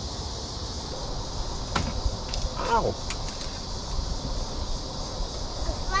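A steady high insect chorus buzzes from the trees over a low rumble. A sharp click comes just under two seconds in, and a short cry of "Ow!" about three seconds in.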